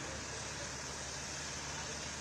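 Steady road traffic noise: an even hiss with a low hum underneath, no distinct events.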